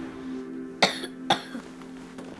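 A boy coughing twice, short and sharp, after drawing on a cigarette, over steady background music.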